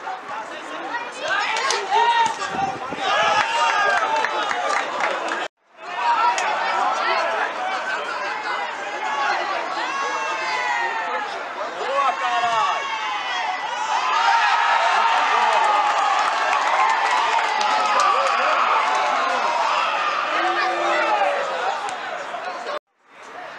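Football spectators and players shouting and calling out over one another, many voices overlapping. The sound drops out briefly about five seconds in, and the voices grow denser and louder from about two-thirds of the way through.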